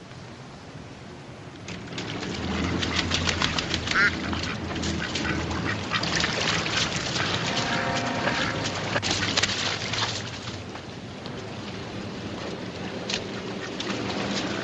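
A flock of ducks quacking, many calls overlapping. They start about two seconds in, are busiest until about ten seconds, then thin out.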